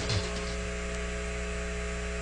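Steady hum and hiss of the mission's radio audio track with no one transmitting, a few steady tones running under it.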